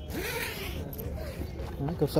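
A brief rustle lasting under a second near the start, over faint voices.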